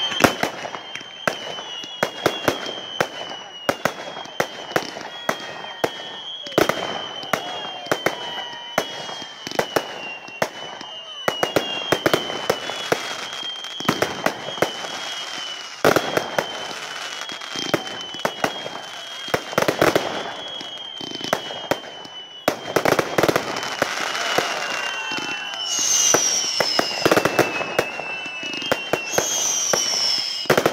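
A professional fireworks display: a rapid, irregular stream of sharp bangs from bursting shells, laced with many short falling whistles one after another. Several louder hissing, crackling swells come in the second half.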